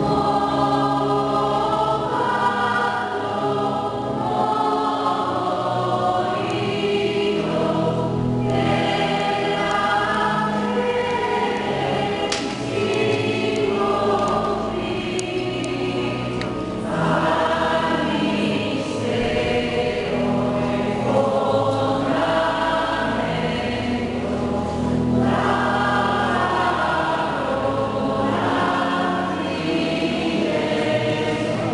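A church choir singing a hymn, in continuous phrases that break every few seconds.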